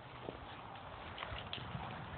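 Faint footsteps on dry outdoor ground: a few irregular soft knocks over a light rustling hiss.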